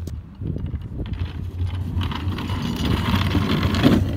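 Wind buffeting the microphone. From about halfway in, a wheeled plastic trash can with a person in it rolls down a concrete sidewalk, a rough rolling rumble and rattle that grows louder toward the end.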